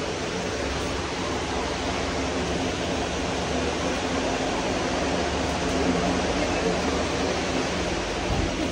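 Steady hiss-like supermarket room ambience, with faint voices in the background.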